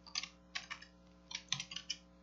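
Computer keyboard typing: three short runs of quick keystrokes.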